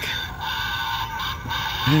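Animated Halloween reaper prop, activated, playing its sound effect through its small built-in speaker, with a man's short laugh near the end.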